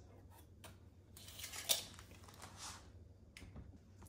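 Faint handling noise: a rasping rustle lasting about a second and a half, with a few light clicks.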